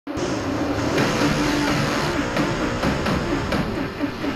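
Race car engines running with revs rising and falling, several pitches wavering together. Music sits faintly underneath.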